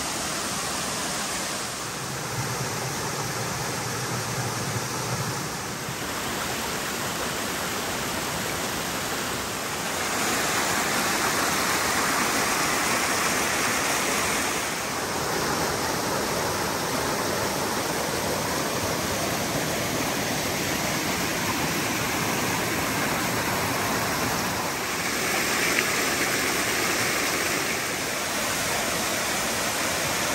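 Small woodland waterfall and rocky mountain stream, a steady rush of water over rocks that steps up and down in loudness and tone every few seconds as it moves between different cascades.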